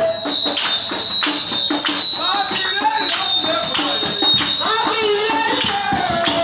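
Church worship music: drums and hand percussion keep a steady beat of about two to three strokes a second while a voice calls or sings over it. A steady high-pitched tone is held from the start until nearly five seconds in.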